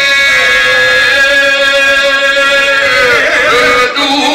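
Men singing izvorna folk music into microphones, holding one long, loud note together. About three seconds in, the held note breaks off into wavering, ornamented singing.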